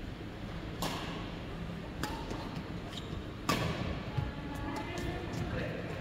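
Badminton rackets striking a shuttlecock in a rally, echoing in a large hall: three sharp hits about a second and a half apart, the third the loudest, followed by a few lighter ticks and taps.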